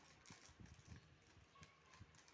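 Near silence, with a few faint, soft knocks in the first second and one more near the end.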